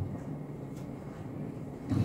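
Room tone of a hotel conference room: a faint, steady low hum, with a brief bump near the end.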